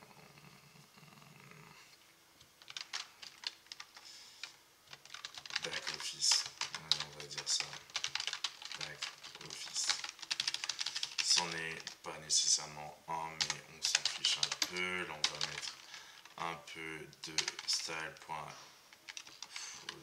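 Computer keyboard typing: quick runs of keystrokes with short pauses, starting about two seconds in.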